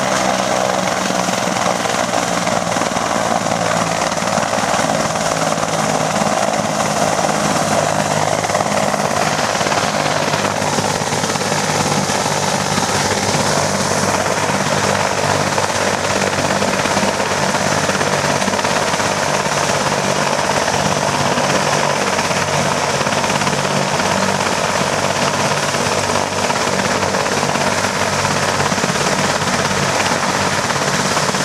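Eurocopter BK 117 twin-turbine rescue helicopter running on the ground with its main and tail rotors turning: a steady, loud mix of turbine whine and rotor sound.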